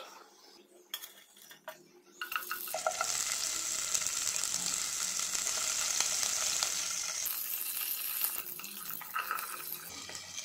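A few light clicks of a steel spatula in a pot, then about two seconds in, green chillies hit hot oil and sizzle loudly. The sizzle eases off somewhat after about seven seconds.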